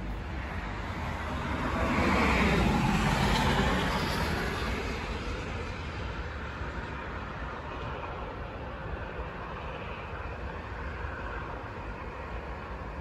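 A vehicle passing: its noise swells to a peak in the first few seconds and then fades, over a steady low rumble.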